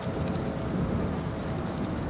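Steady low wind rumble on the microphone outdoors.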